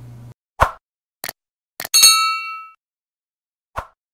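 Edited-in sound effects: a short hit, two brief clicks, then a ringing bell-like ding made of several steady tones that fades within about three quarters of a second, and one more short hit near the end.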